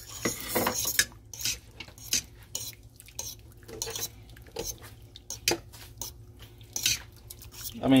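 A spoon stirring beans in their cooking liquid, knocking and scraping against the side of a metal stockpot in irregular clinks.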